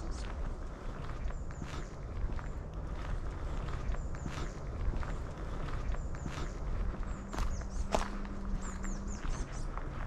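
Footsteps of a person walking at a steady pace on a sandy road.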